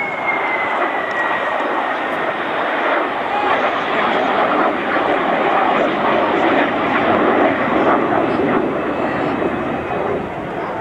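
Jet engine noise from an Airbus A330 tanker and two Panavia Tornado jets flying past in close formation: a loud, steady rushing sound, with a thin high whine that slides slowly down in pitch over the first couple of seconds.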